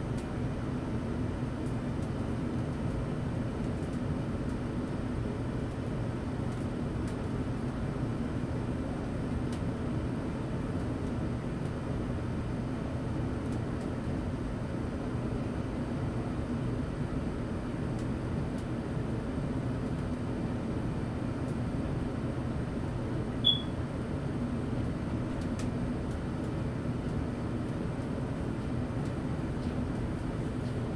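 Steady low hum and hiss of room background noise, unchanging throughout, with one brief high click about twenty-three seconds in.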